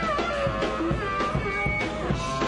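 Live blues band playing an instrumental passage: electric guitar lead with bent, sliding notes over a drum kit's steady beat.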